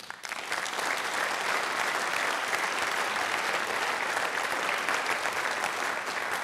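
A conference hall audience applauding, steady clapping that begins abruptly and tails off slightly near the end.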